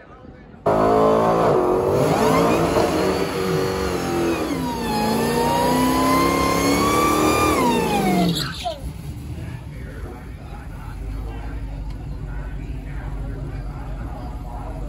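Drag car engine at full throttle, starting abruptly under a second in. Its note climbs and drops back at each gear change, then falls away steeply about eight seconds in, leaving quieter background noise.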